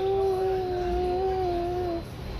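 A man's voice singing the adhan, the Islamic call to prayer, drawing out one long held note with a slight waver; it breaks off at the very end.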